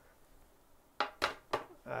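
Quiet for about a second, then a few short hard clacks as a handgun is taken off and set down on a hard surface.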